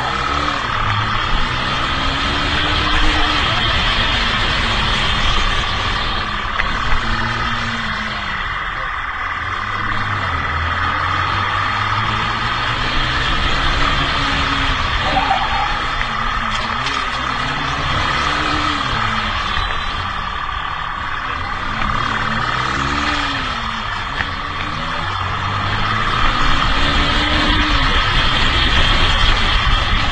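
Motorcycle engine being ridden hard through streets, its pitch rising and falling again and again every couple of seconds as the throttle is opened and closed, over steady road noise.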